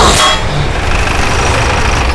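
A loud, dense rumbling noise with a deep low end, strongest in its first half-second then holding steady: a dramatic sound effect in a TV serial soundtrack.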